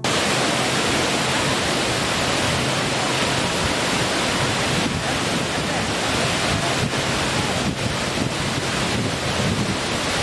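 Loud, steady rush of water, an even noise with no rise and fall.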